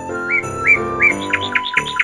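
Background music with held notes and a run of short, bird-like chirping whistle notes repeating several times a second.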